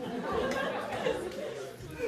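Indistinct talking, more than one voice, in a large echoing hall.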